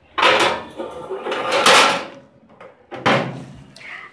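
Glass casserole dish set onto the metal wire rack of a Bajaj Majesty countertop oven toaster grill and slid in, then the oven's hinged glass door swung shut. Three scraping and clattering sounds, the longest and loudest about halfway through.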